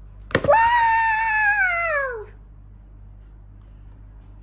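A couple of sharp taps of a plastic toy hammer on a plaster dig-kit egg, then a child's long, high-pitched cry that holds and then slides down in pitch.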